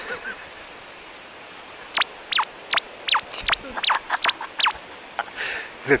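A quick run of about ten high chirps, each sliding steeply downward in pitch. They start about two seconds in and stop shortly before the speech resumes, over a faint steady background hiss.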